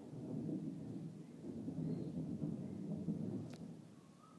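Camera handling noise: a low rumble while the camera is moved about, with one sharp click about three and a half seconds in.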